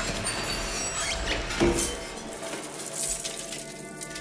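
Science-fiction film trailer sound design: noisy swishes with a few sharp hits around the first and second seconds over faint steady tones, growing quieter in the second half.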